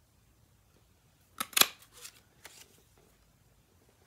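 Handheld dragonfly craft punch cutting through card stock: two quick sharp snaps about a second and a half in, then a few softer clicks.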